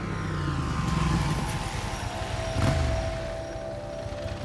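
Motorcycle engine running and revving, its pitch bending up and down, with a rise and fall about three-quarters of the way through. A held musical tone runs underneath.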